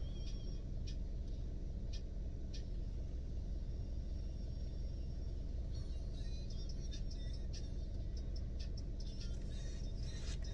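Steady low rumble of a car's interior with the vehicle running, with a few faint clicks.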